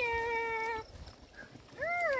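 A high-pitched, drawn-out vocal call held at a steady pitch for about a second, then a second call near the end that rises and falls with a wavering tail.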